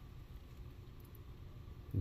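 Faint, steady low rumble of room noise with no distinct event.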